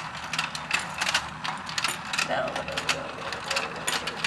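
Battery-powered Let's Go Fishin' toy running: its small motor hums faintly while the plastic gears turning the fish pond click and rattle in a rapid, irregular stream.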